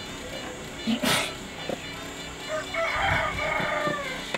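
A drawn-out animal call in the second half, after a brief sharp noisy burst about a second in.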